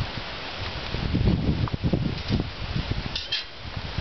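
Irregular low rumble of wind on the microphone, swelling a few times in the middle, with a couple of faint light clicks near the end.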